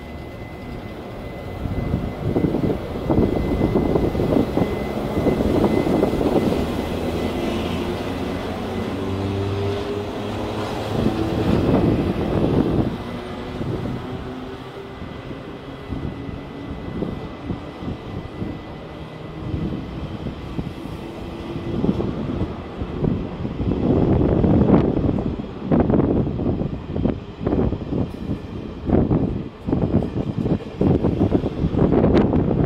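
Taiwan Railways General Electric E42C electric locomotive hauling a passenger train closely past: a rumble with a pitched hum that climbs as the locomotive goes by, then the coaches rolling past with repeated wheel clatter over the rail joints, louder in bunches near the end.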